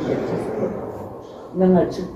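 Indistinct speech from a played-back video recording over heavy background noise, with a louder stretch of voice near the end.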